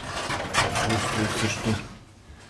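A wooden door's handle and latch clicking and rattling as the door is worked, with a sharp click about half a second in, under a man's low muttering voice.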